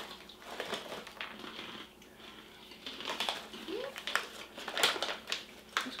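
A foil snack pouch crinkling as it is handled, in a scatter of short crackles that come thickest about halfway through.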